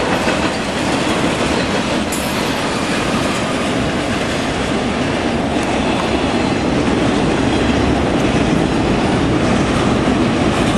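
Freight train of autorack cars rolling past close by: a steady, loud rumble of steel wheels on rail, with a brief high squeal about two seconds in.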